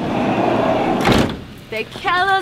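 Several excited voices talking over one another, with a single sharp knock about a second in.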